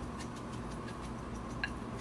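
Salt and pepper shaken from a shaker over a bowl of crab meat stuffing: soft, faint ticks over a steady low background hum.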